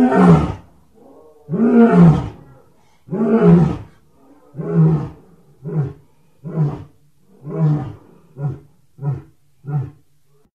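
Lion roaring in a bout: four long, deep roars, then a run of about six short grunting calls that come quicker and closer together toward the end.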